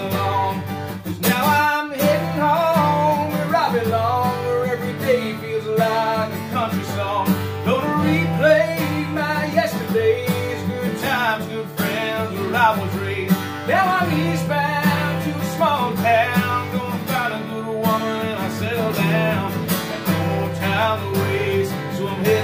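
Steel-string acoustic guitar strummed steadily under a man's singing voice, a country-style song.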